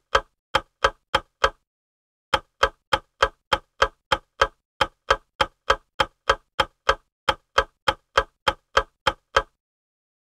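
Clock-ticking countdown sound effect, even ticks about three a second, with a brief break about a second and a half in; the ticks stop shortly before the end as the answer time runs out.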